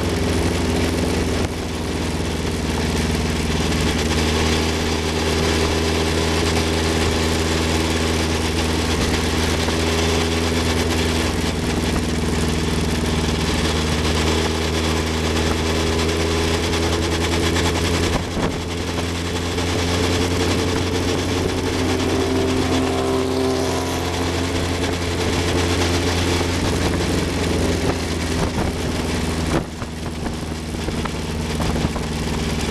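1960 Cooper T53 Lowline racing car's engine running at steady, moderate revs with little change in pitch as the car cruises at about 40–45 mph, with wind buffeting the on-board microphone. There is a brief dip in the sound about 18 seconds in.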